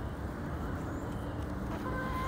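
Steady low outdoor rumble, like road traffic or wind, under a backyard flock of foraging chickens. A faint short hen call starts near the end.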